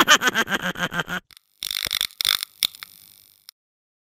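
A woman laughing: a quick run of short laughs for about a second, then breathier, hissing bursts that trail off and stop about three and a half seconds in.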